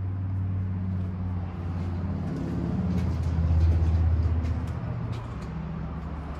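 A motor vehicle's engine running close by, a low hum that swells louder a little past the middle and then eases off.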